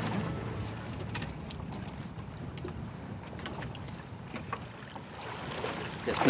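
Sea water splashing and lapping against the side of a small fishing boat as a snorkeler climbs aboard, with scattered small knocks and drips over a steady wash of wind and sea.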